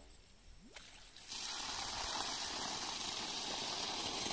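Water starts gushing from a submersible pump's outlet pipe about a second in, then rushes out steadily. This shows that the three-phase pump, run on single-phase power through a capacitor, has started and is delivering water.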